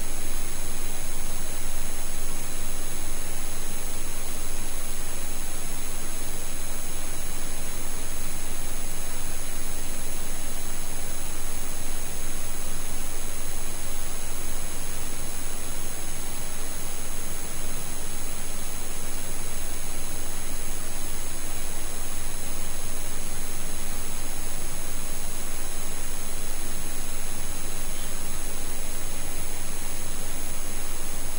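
Steady hiss with several faint constant high-pitched tones above it, unchanging throughout: background noise of an open recording microphone, with no distinct event.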